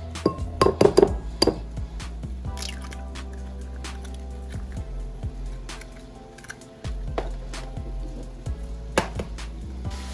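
Eggs cracked one after another on the rim of a ceramic bowl: sharp taps and clinks, the loudest cluster about a second in, over background music with a steady bass.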